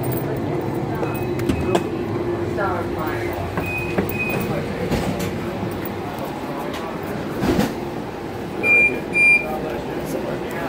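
Light rail train standing at the platform with a steady electric hum, under indistinct voices. Short paired electronic beeps sound from the train, faint early on and then twice loudly near the end, typical of a door warning chime.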